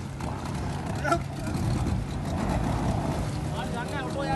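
A boat engine idling with a steady low hum, with fishermen's shouts over it about a second in and again near the end.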